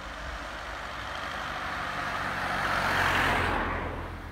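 A car driving past on an asphalt road: its tyre and engine noise swells to a peak about three seconds in, then falls away.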